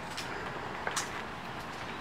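Quiet steady outdoor background noise with a few faint short clicks, the sharpest about a second in.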